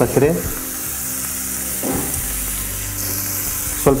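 Mixed diced vegetables sizzling steadily as they fry in oil in a nonstick frying pan on the stove.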